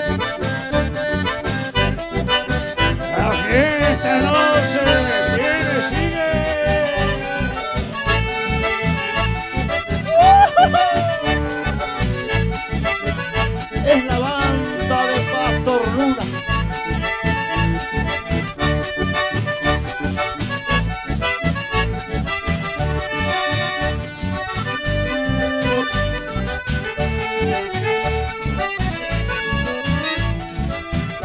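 Live chamamé band led by an accordion, playing dance music over a steady, even bass beat.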